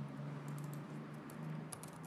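Computer keyboard typing: a run of scattered light keystrokes, thickest in the second half, as a line of Python code is edited.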